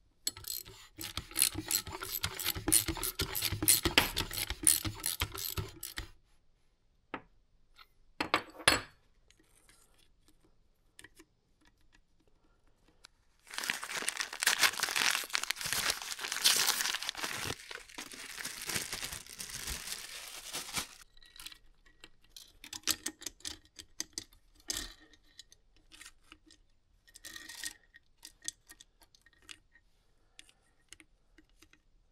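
A socket ratchet clicks rapidly for about five seconds while turning over the KX250F engine's crankshaft to check that the newly fitted piston and cylinder are not binding. Later a paper bag rustles for about seven seconds, followed by scattered light metal clinks.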